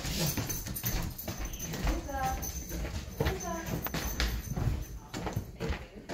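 A Keeshond puppy's claws clicking and scrabbling on a hardwood floor as it tugs and drags a pillow, with two short high-pitched vocal sounds about two and three seconds in.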